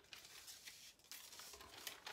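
Near silence, with faint rustles and light ticks of an Infusible Ink sheet on its clear transfer backing being handled and pressed down by hand.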